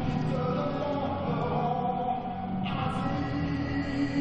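Choral music for a skating program: a choir holding long, sustained chords, with a brighter layer coming in suddenly a little past halfway.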